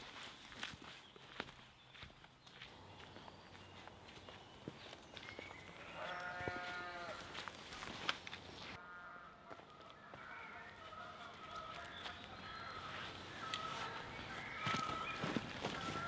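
Faint footsteps on a woodland path, with a sheep bleating: one call about six seconds in and a fainter one about three seconds later.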